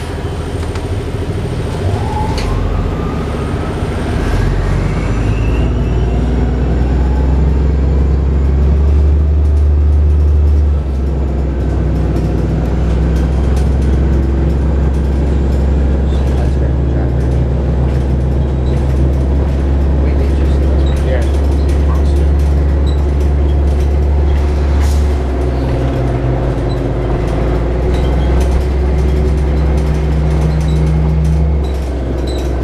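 Interior of a 2007 Orion VII diesel-electric hybrid bus (Cummins ISB diesel with BAE Systems HybriDrive) under way: a very loud, steady low drone, with a rising whine over the first few seconds as the bus speeds up. The drone eases slightly about ten seconds in.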